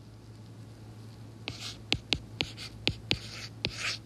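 Stylus writing on a tablet as 'C = 750' is handwritten: from about a second and a half in, a quick run of sharp taps with light scratching between them. A low steady hum sits underneath.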